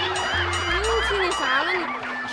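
A comic honking sound effect whose pitch wobbles up and down several times, over background music.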